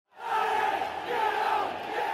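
A large football crowd shouting together, many voices at once, swelling in from silence in the first moments and then holding loud and steady.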